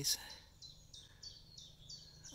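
A small songbird singing a run of short, high notes, about three a second, stepping between two pitches.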